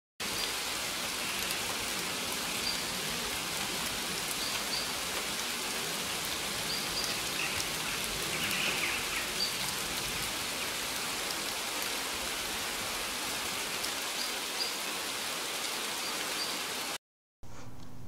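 Steady rush of a waterfall, with short high chirps every second or two above it. It cuts off suddenly about a second before the end.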